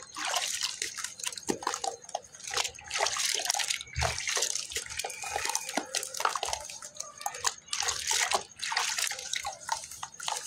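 Hands squeezing and stirring a watery slurry of geru (red ochre clay) and sand in a plastic bucket: irregular sloshing and splashing, with drips as handfuls are lifted and let fall back in.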